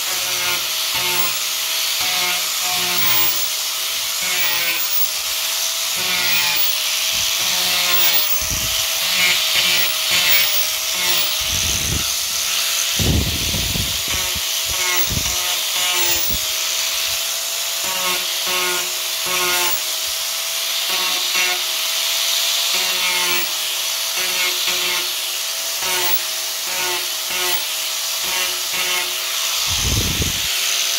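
Handheld angle grinder running steadily with a slightly wavering whine, its disc scoring grooves along the grain of a pine board to distress it, the rasp of the cut coming and going as it is worked. There is a brief low rumble about halfway through.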